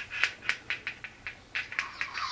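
Sharp, irregular plastic clicks and ticks, around five a second, from the clear plastic Perplexus Death Star maze ball as it is turned in the hands, its inner parts and marble knocking against the plastic tracks.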